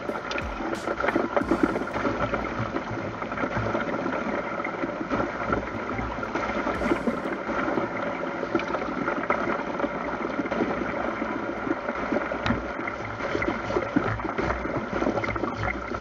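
Small motor, most likely the petrol water pump feeding the gold-washing sluice through its hose, running steadily with water splashing through the box and occasional scrapes of a shovel in gravel.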